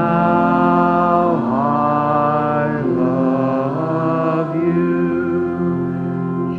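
A slow hymn sung in church, with a man's voice leading at the microphone and each note held for about a second and a half.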